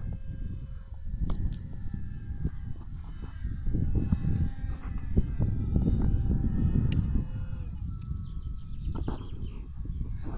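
Wind buffeting the microphone in uneven gusts, with a faint steady whine above it that fits the model aircraft's electric motor and propeller. Two sharp clicks are heard, one about a second in and one near seven seconds.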